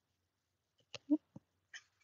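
Folded cardstock being handled, giving a couple of light taps and a faint rustle, with a short pitched sound about a second in.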